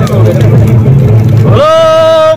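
A loud low rumble over scattered voices, then a voice holding one long high note, a shout or sung call, from about three quarters of the way in.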